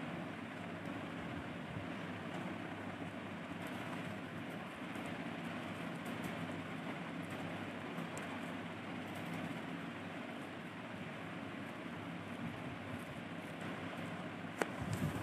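Steady low background noise with a faint hum, with a few faint ticks in the second half.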